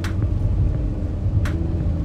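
Steady low rumble of a moving car heard from inside the cabin, with two brief rustles: one right at the start and one about a second and a half in.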